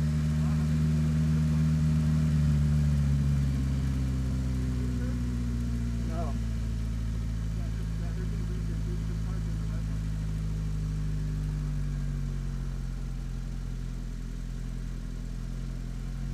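Ariel Atom race car's Honda four-cylinder engine running steadily at low revs as the car creeps along at walking pace. A brief faint voice about six seconds in.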